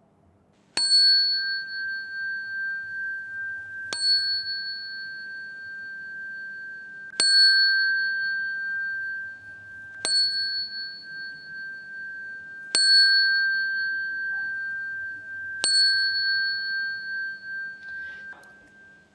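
A Buddhist ritual bell (qing) struck six times, about every three seconds, each strike ringing on with a clear high tone until the next. The strikes mark the bows of the closing prostration to the Buddha.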